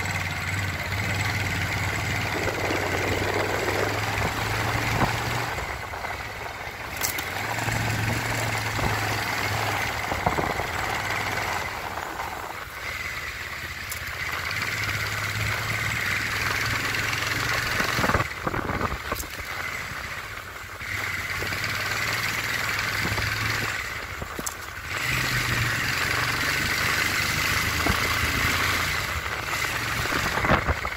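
A vehicle engine running on the move, a steady hum that drops away for a second or two about every five seconds and then comes back. A few sharp knocks come through, around a quarter of the way in and again past the middle.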